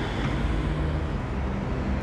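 Steady low rumbling background noise, with no distinct events.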